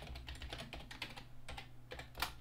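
Faint run of keystrokes on a computer keyboard: quick, irregular clicks as a short command is typed, over a low steady hum.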